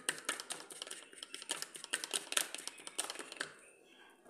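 A spoon stirring wet baby cereal in a small plastic bowl, making a quick, irregular run of clicks and taps against the bowl that dies down shortly before the end.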